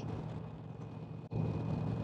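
Indian Chieftain motorcycle's V-twin engine running at highway cruising speed, with steady wind and road noise. The sound cuts out for an instant a little past a second in, then comes back louder.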